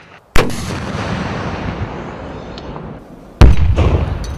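An RPG-7 rocket-propelled grenade launcher fires with a sharp blast about a third of a second in, followed by a long rumbling tail. About three seconds later the warhead explodes on the target in a second blast, louder and deeper than the first.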